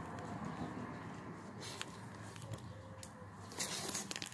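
Faint handling noise from skeins of yarn in plastic wrap: a few soft clicks and light rustles over low room hum, growing into a plastic crinkle near the end.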